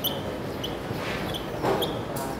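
Dry-erase marker writing on a whiteboard: about four short, high squeaks with scratchy rubbing of the tip between them.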